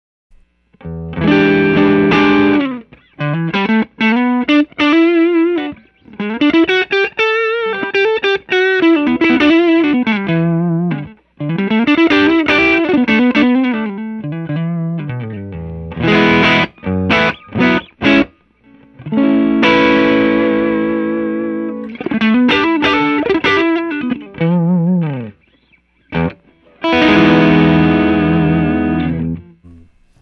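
Electric guitar, a Fender Custom Shop '60 Stratocaster, played through a JAM Pedals TubeDreamer 808-style overdrive, switched on, into a Fender '65 Twin Reverb amp. It plays lightly driven chords and single-note lines with bends and vibrato, in phrases broken by short pauses.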